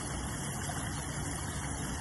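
Pump-fed garden pond waterfall, water spilling and splashing steadily over the rocks into the pond, with a low steady hum underneath.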